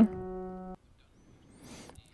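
A held piano chord sounding steadily and stopping abruptly under a second in, as the keys are let go. Near silence follows, with a short soft hiss, like a breath, shortly before the end.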